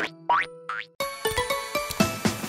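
Two quick rising 'boing' cartoon sound effects, then children's background music starting suddenly about halfway through.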